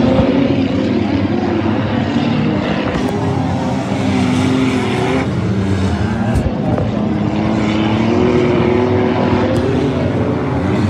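Several figure-8 race cars running around a dirt track, their engines revving up and down with overlapping, rising and falling pitches.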